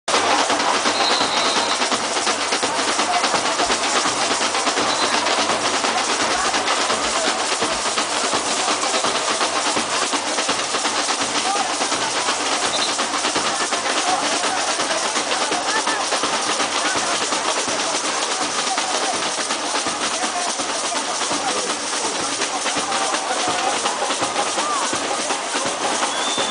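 A large samba percussion group drumming together live, a dense, steady rhythm of many hand-carried drums, with voices over it.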